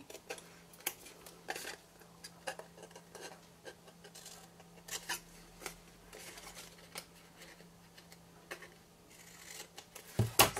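Scissors snipping through paper: a run of faint, short, irregularly spaced snips as small pieces are cut away.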